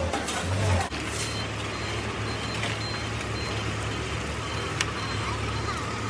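Truck engine running steadily at a low, even pitch. A faint high beep repeats through it, and there are a few sharp knocks.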